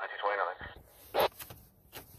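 Fire dispatch radio traffic: a man's voice, thin and narrow as through a scanner, for the first half second or so. Then a quieter, fuller background with one short, loud sound just over a second in.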